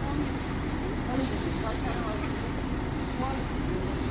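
Several people talking at a distance over a steady low rumble.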